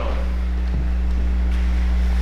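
A steady low hum with faint room noise, and no speech.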